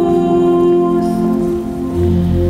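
Organ music: a sustained chord held steady, easing slightly near the end before a deep bass note comes in.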